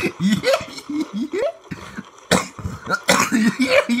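A person laughing in short bursts, with a few sharp breathy outbursts in the second half.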